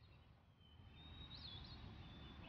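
Faint outdoor ambience fading in from silence and growing slowly louder, with a thin, high bird call that flicks up and down near the middle.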